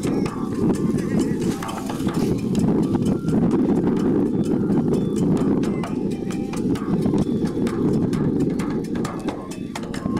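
Kagura taiko drum struck in short, irregular knocks, under a heavy wind rumble on the microphone.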